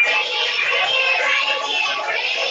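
Music with singing voices, played from a video and heard through a video call's shared audio.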